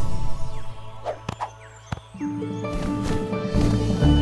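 Cartoon soundtrack: a few short sound effects in a quieter stretch, then background music with held notes comes in about two seconds in and builds.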